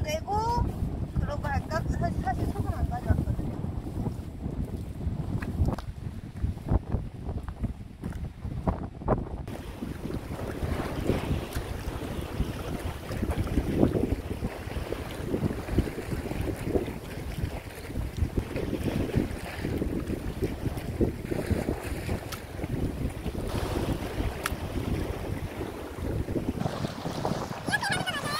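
Wind rumbling on the microphone, with sea water washing over rocks; the sound changes abruptly about a third of the way in.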